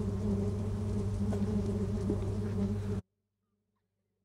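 Swarm of bees buzzing in a steady low hum that cuts off suddenly about three seconds in.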